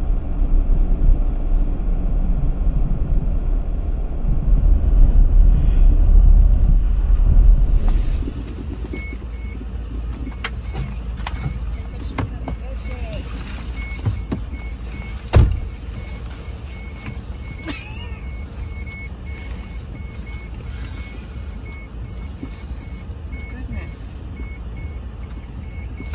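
A minivan driving on a snowy road, heard from inside the cabin as a loud, steady low rumble for about the first eight seconds. After that the van is stopped and quieter, and a high electronic chime beeps in quick, even repeats, with a few clicks and a sharp thump about halfway through.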